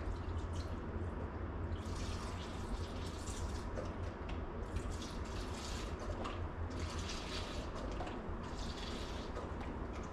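Beef stock poured from a carton into a plastic mixing bowl, splashing in several separate pours of about a second each, over a steady low hum.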